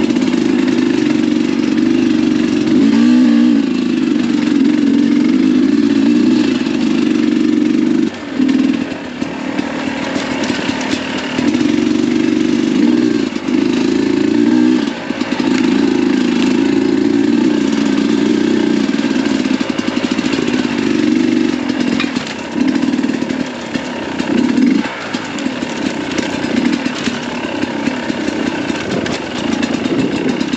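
Sherco 300 SE Factory two-stroke enduro engine under way, held mostly on the throttle, with the throttle rolled off and back on several times.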